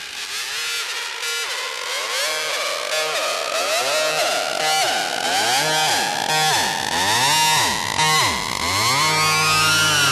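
Psytrance breakdown: synthesizer lines gliding up and down in pitch over a hiss, with no kick drum, building steadily in loudness.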